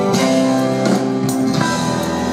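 Live band playing an instrumental passage: held keyboard notes that change every half second or so over drums, with cymbal strokes.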